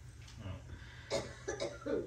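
A man's short cough about a second in, with a few faint vocal sounds around it.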